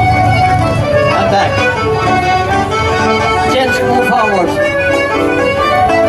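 Live band music from a bandstand ensemble, amplified through loudspeakers: a steady tune with held notes and a few sliding notes.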